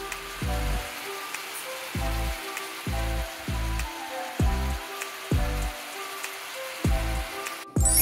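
Stir-fried bean sprouts sizzling in an electric skillet, a steady hiss that stops suddenly near the end. Background music with a repeating bass note plays underneath.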